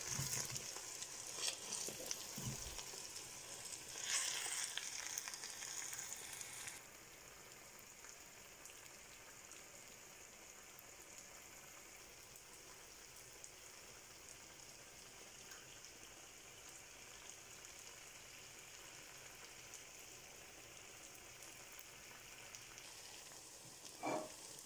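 Garden egg and spinach sauce sizzling in a frying pan, with a few brief louder bursts in the first seconds; about seven seconds in it drops suddenly to a faint steady hiss.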